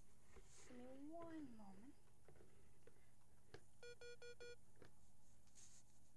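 Faint room tone with a brief wordless vocal sound, rising and falling, about a second in. About four seconds in comes a short burst of four quick electronic beeps.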